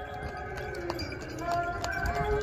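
Open-air ambience of a large paved square: people's voices with the clip-clop of a horse-drawn carriage's hooves on the stone paving.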